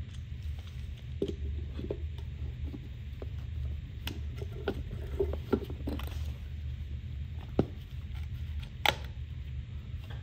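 Scattered clicks and light knocks of a one-handed bar clamp being positioned and tightened over a fog light's glued-in glass lens, with two sharper clicks near the end, over a steady low hum.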